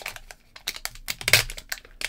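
A sealed trading card pack's wrapper crinkling and crackling in the hands as it is pulled at the crimped top seal, in short irregular crackles with a brief lull about half a second in. The seal is stuck fast, "like super glued together".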